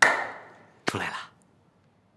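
Two sharp hand slaps on a man's shoulder, the first and louder one at the start, the second about a second later, each fading quickly.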